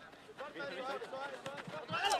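Faint distant voices calling out on an outdoor football pitch, with a light knock near the end.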